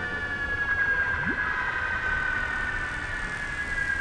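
Electronic synthesizer music: a sustained, siren-like synth tone slowly sliding down in pitch over a noisy wash, with a brief low rising glide about a second in.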